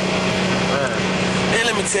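Steady drone of a coach bus heard from inside the passenger cabin: an even engine hum over road noise, with a man's voice coming in near the end.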